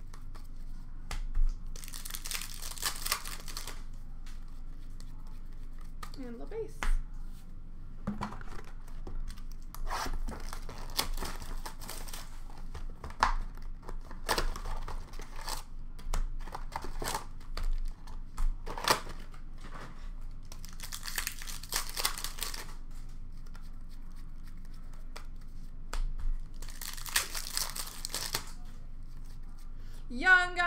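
Upper Deck hockey card packs being torn open and their wrappers crinkled, in about five bursts of a second or two, with cards clicking and sliding through the hands in between.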